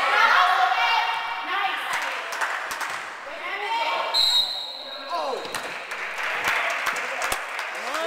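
Basketball game in a gym: voices calling out and shouting across the court, with basketballs bouncing on the floor in sharp short knocks. A brief high-pitched tone sounds about four seconds in.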